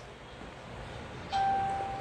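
A single electronic ding about a second in: one clear tone, held for about a second and fading away.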